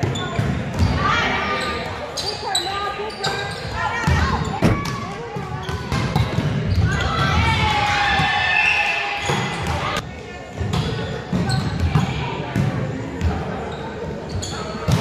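Volleyball rally in an echoing gym: sharp slaps of the ball being passed, set and hit, with players shouting calls to each other.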